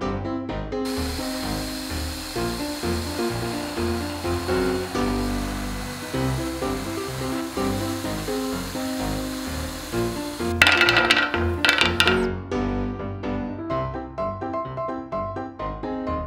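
Piano-led background music over the noise of a bench drill press boring into a wooden dowel, running from about a second in until about twelve seconds in, with a louder, rougher stretch shortly before it stops.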